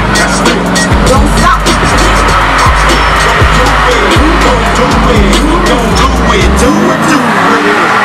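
Loud music with a deep bass line, mixed with a pickup truck's burnout: tires squealing as they spin in their own smoke. The bass drops out about two-thirds of the way through.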